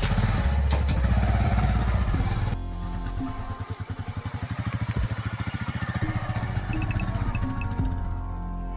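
A small commuter motorcycle's engine running as the bike pulls away and rides off, its exhaust putting in quick, even pulses in the second half, with music playing over it. The sound changes abruptly a little past two seconds in.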